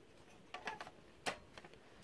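Plastic cover of a Honeywell TC49A smoke detector being pressed and fitted onto its base by hand: a few soft clicks about half a second in, then one sharper click a little past one second.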